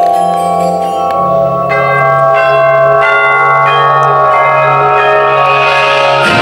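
Percussion ensemble playing a slow passage of held, ringing chords on mallet percussion (marimbas, vibraphones and bells) over a sustained low note. A rising wash of noise swells in near the end.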